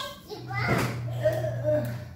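A woman's high-pitched voice in short, playful sung notes, over a steady low hum.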